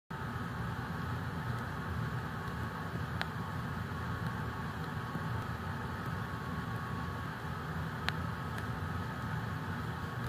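Steady background rumble and hiss with a faint hum, like a machine or ventilation running, and two faint clicks, one about three seconds in and one about eight seconds in.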